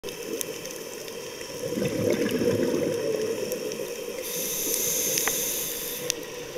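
Underwater sound of a scuba diver's regulator breathing: a rushing, bubbling exhalation, then a hissing inhalation that comes in about four seconds in, with scattered faint clicks.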